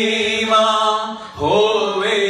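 A man singing a slow worship song into a microphone, holding long notes. The singing dips briefly, then slides upward into the next phrase about one and a half seconds in.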